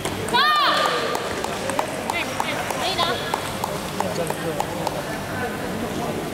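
Table tennis rally: sharp clicks of the plastic ball striking bats and table, roughly two to three a second. A loud, short, high-pitched sound comes about half a second in.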